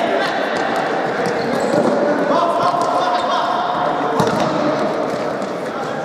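Futsal ball being kicked and bouncing on the hard floor of an indoor sports hall, a string of sharp knocks that ring in the hall, the loudest about four seconds in. Players' voices shout over it.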